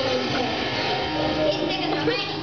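Background music playing, with voices over it.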